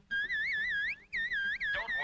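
Warbling electronic whistle-like voice of a bird-like alien creature, in two phrases of just under a second each. The pitch swoops up and down in quick loops, heard as unintelligible buzzing chatter.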